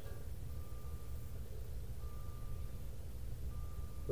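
Steady low background rumble, with a faint thin tone that sounds three times, about a second each.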